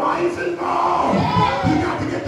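A preacher's amplified voice, raised and half-sung at a sermon's climax through a handheld microphone, with the congregation's voices calling out over and around it.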